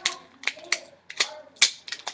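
Crackling of plastic packaging as a pack of self-adhesive rhinestone gems is handled: a rapid, irregular string of sharp clicks and crinkles.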